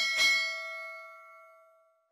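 Notification bell chime sound effect: two quick strikes near the start, then several bright ringing tones that fade away over about two seconds.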